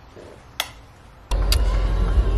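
Faint room tone with a single click, then a sudden change a little over a second in to the steady low rumble of a car's cabin on the road, with a couple of light clicks.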